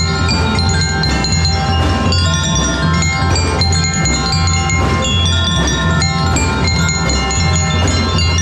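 Drum and lyre band playing: bell lyres and marimbas struck with mallets, many quick ringing notes over a steady low accompaniment.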